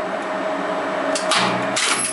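Express Lifts relay-logic lift controller cabinet running with a steady hum. Relays clack about one and a half seconds in as the lift reaches the second floor and its landing call is cancelled.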